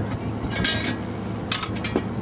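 Low steady hum of an idling boat motor, with two short hissing swishes about half a second and a second and a half in.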